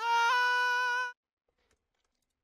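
UTAU synthesized singing voice holding one sung note for about a second, with a slight step in pitch early on, growing quieter as it goes on because its envelope has been pulled down toward the end.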